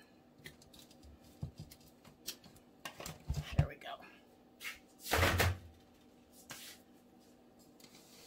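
Handling noises on a craft table: scattered light clicks and taps as the wire cutters are put aside and the tobacco basket of artificial flowers is handled, with one louder rustling thump a little after five seconds in.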